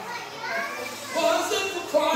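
Indistinct voices speaking in a hall, quieter at first and growing louder from about a second in.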